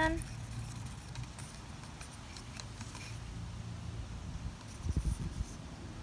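Wooden craft stick stirring watered-down acrylic paint in a plastic cup: faint scraping and light tapping against the cup wall over a steady low rumble, with a brief low thump about five seconds in.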